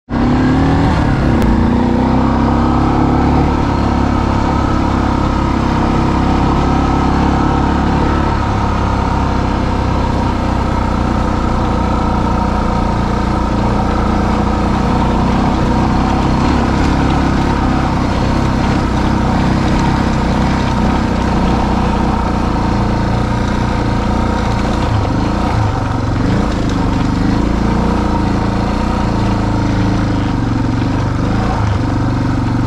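A vehicle engine running steadily at low speed, heard from on board as it drives a dirt trail, with small rises and falls in revs.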